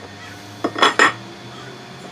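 Lengths of 2020 aluminium extrusion rail knocking together as they are handled and set down: a quick cluster of about three metallic clinks about a second in.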